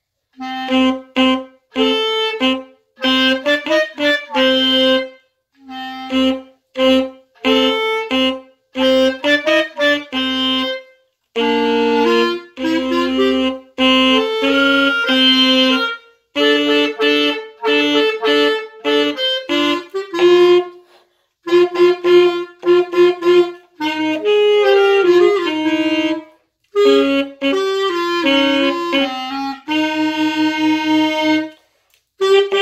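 Alto saxophone and clarinet playing a duet: short detached notes grouped into phrases, with brief pauses between phrases.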